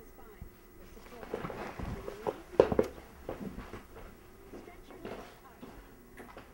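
Short bursts of a person's voice without clear words, loudest a little before the middle, mixed with a few short sharp sounds.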